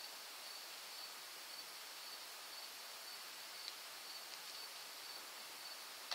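Quiet room tone: a steady hiss with a faint, steady high-pitched whine, and one faint tick about two-thirds of the way through.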